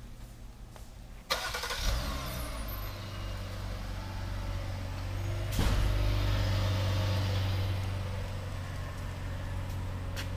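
A 2018 Jeep Cherokee Limited's 3.2L V6 starts, most likely by remote start with no one inside, about a second in. It then settles into a steady idle, which gets louder about five and a half seconds in.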